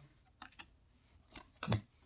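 Trading cards being slid through a handheld stack: a few faint clicks of card edges, then a short rustle near the end as one card is moved to the back.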